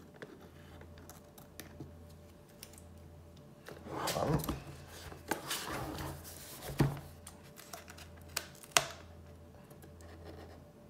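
Small scissors cutting the seals of a cardboard box, with the box rubbed and shifted in the hands: rustling and scraping around four seconds in and again a second later, then a few sharp snips near the end. A steady low hum runs underneath.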